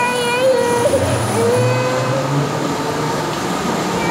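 Steady din of a busy bumper-car arena, with a high voice calling out in long drawn notes at the start and again about a second and a half in.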